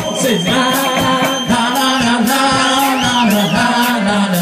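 Live rock band playing: drum kit keeping a steady beat under electric guitars, with long sung notes held over the top.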